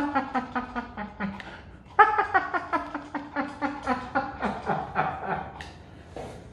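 A man laughing in two long runs of quick, evenly spaced 'ha-ha' pulses, each run sinking in pitch toward its end; the second run starts about two seconds in.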